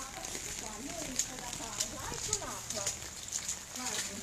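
Faint voices talking in the background, with scattered light clicks and taps over a steady low hum and hiss.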